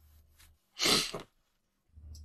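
One short, sharp breath noise from a man, about a second in, lasting about half a second.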